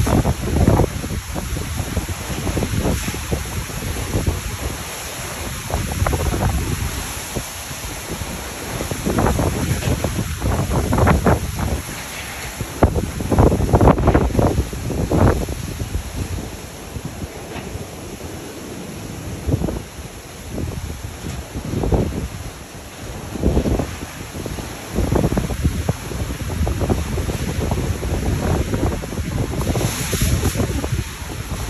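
Typhoon-force wind blowing in repeated gusts and buffeting the microphone, with the strongest blasts around the middle.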